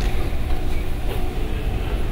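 Steady low rumble of lecture-hall background noise, with no distinct events.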